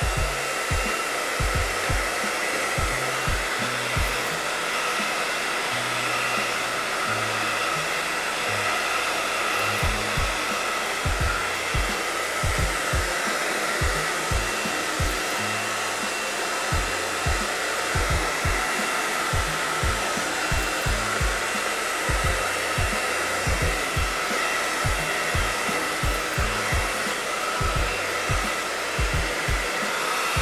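Handheld hair dryer blowing steadily with a high motor whine while natural hair is blow-dried straight. A low thumping beat runs underneath.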